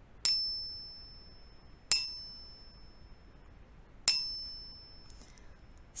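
Three high, bell-like chime dings, each ringing and fading away. The first comes just after the start, the others follow about two seconds apart. Each ding is the cue for the listener to say the next number in a backward count.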